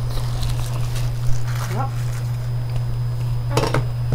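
A man biting into and chewing a paper-wrapped shrimp sandwich, with faint clicks and rustles of food packaging and plastic utensils at the table, over a steady low hum. A brief louder burst comes near the end.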